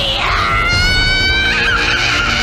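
A young woman's high-pitched, shrieking laugh, one long cry rising slightly in pitch and held for over a second, over background music.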